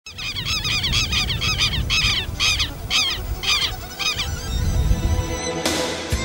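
A bird giving a run of loud, repeated honking calls, about two a second, that stop about four seconds in. A rising whoosh follows near the end, leading into music.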